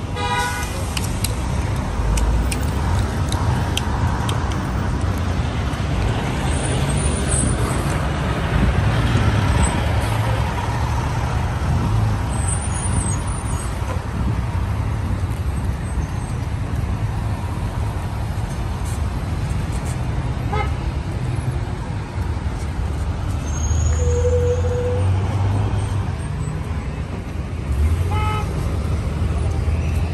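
Busy city street traffic: cars and trucks driving past with a steady low rumble. A short car horn toot sounds late on.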